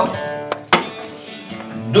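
Acoustic guitar strummed live between sung lines: two quick, sharp strums a little under a second in, the second louder, then the chord rings and fades.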